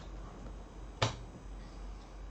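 A single sharp click about a second in, over a faint steady background hum.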